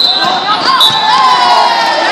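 A volleyball smacked hard right at the start, followed by long shouts from players and spectators in the gym.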